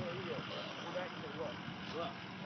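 Faint, indistinct voices over a steady outdoor background hiss.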